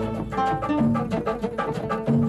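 Oud plucked with a plectrum in a quick run of notes, in instrumental music.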